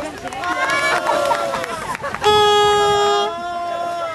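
Several people talking and calling out, then about two seconds in a loud, long shout held for about a second.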